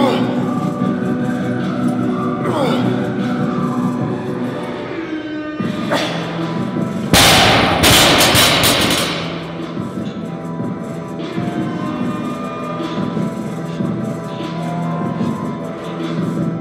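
Background music throughout. About seven seconds in, a loaded barbell with bumper plates is dropped to the floor: a loud impact followed by about two seconds of bouncing and rattling.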